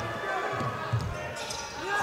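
Basketball being dribbled on a hardwood court, a few soft thuds, over the murmur of an arena crowd.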